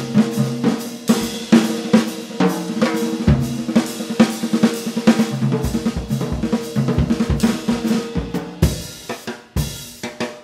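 Jazz drum kit solo played with sticks: quick snare, tom and bass drum strokes with cymbal and hi-hat, the drums ringing. It thins to a few sparse, quieter hits near the end.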